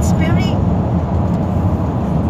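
Steady low rumble of road and engine noise heard from inside a car's cabin while driving through a road tunnel.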